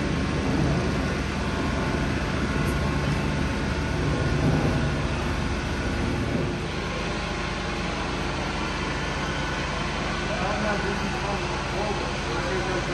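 Indistinct talking, too low to make out words, over a steady low background rumble.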